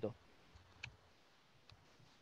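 A few faint, sharp clicks of computer keyboard keys, spaced about a second apart, as a word is typed.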